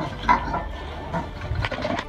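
A Persian cat hissing in a few short bursts as it squares up to a vervet monkey.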